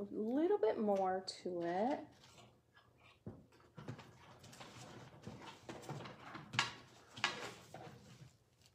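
A woman's voice for about the first two seconds, then soft rustling of a plastic bag being rummaged through, with two louder rustles near the end.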